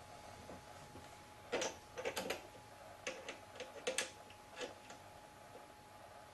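Light metallic clicks and taps, in small clusters, as steel chuck keys are fitted into the jaw-screw sockets of an independent four-jaw lathe chuck, over a faint steady hum.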